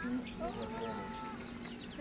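Domestic chickens clucking, a few short calls and one longer held call.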